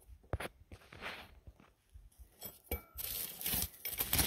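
A metal hand tool scraping and crunching through gritty soil and dry pine needles while digging, with a couple of sharp clicks. The scraping gets louder and denser in the last second.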